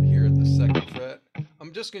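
Distorted electric guitar ringing out an F-sharp chord, which is cut off abruptly under a second in, followed by a man talking.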